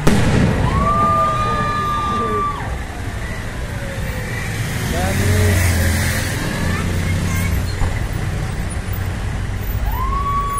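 A firework bang right at the start, followed by people's long whooping cheers, one near the start and another near the end, over a low rumble of road traffic.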